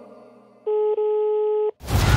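Telephone line tone: one steady electronic beep of about a second, with a tiny break just after it starts, heard alone after the music drops out. The full band comes crashing back in right at the end.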